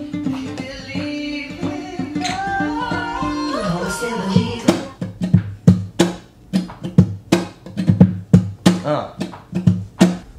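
Acoustic guitar played by hand: a few seconds of held, picked notes with a slide down in pitch, then from about four seconds in a rhythmic, percussive strummed part with sharp accents about three a second.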